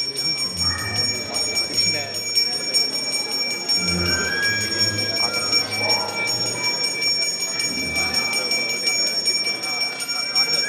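A puja hand bell rung rapidly and without pause, its high ringing tones holding steady, with voices underneath.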